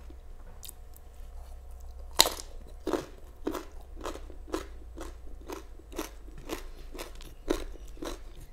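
Close-miked mouth sounds of a person biting and chewing food. One loud bite comes about two seconds in, followed by steady chewing about twice a second.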